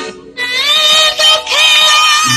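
A song being sung: one voice holding long, drawn-out notes over music. It comes in about half a second in, after a brief break.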